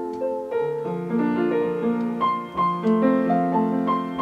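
Upright piano playing a slow, gentle solo passage of single notes and chords, a few new notes each second, without the voice.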